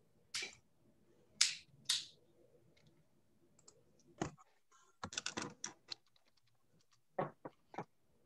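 Scattered light clicks and taps, with a quick run of clicks about five seconds in and a few more near the end.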